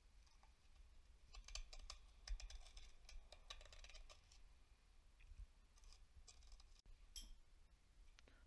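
Faint, intermittent scratching and clicking of a broken piece of plastic funnel used as a scraper on the rusty buildup in the cylinders of a D24 diesel engine block. The clicks come in clusters, from about a second in to about four seconds, then again briefly near the end.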